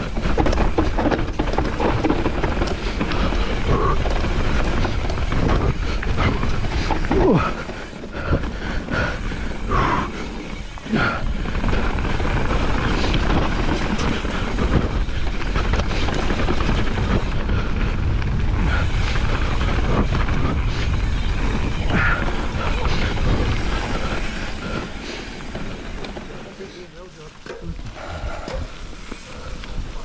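Mountain bike descending a dirt trail: a steady rush of wind on the microphone with tyre noise on dirt and the bike rattling over bumps, with short knocks throughout. It quietens near the end as the bike slows.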